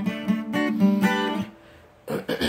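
Acoustic guitar with a capo, strummed in a quick run of chord strokes that then ring and fade away near the end.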